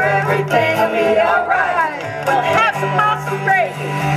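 Live acoustic bluegrass band playing, with banjo, guitar and upright bass under voices that slide up and down in pitch.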